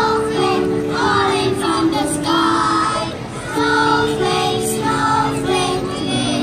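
A choir of young schoolchildren singing a song together through a stage sound system, over instrumental accompaniment with held notes and a light steady beat.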